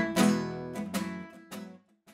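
Acoustic guitar strummed, the last chords of a song ringing out with a few lighter strums, then fading away to silence near the end.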